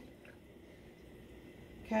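Olive oil trickling faintly from a pourer spout into a frying pan, heard as a soft, even hiss with no distinct drips.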